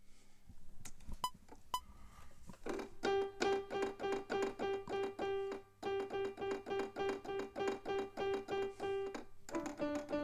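A HALion Sonic software piano played from a MIDI keyboard, striking one note over and over at about four a second, with a short break in the middle, then moving to a lower repeated note near the end. Two sharp high ticks come about a second in, before the playing starts.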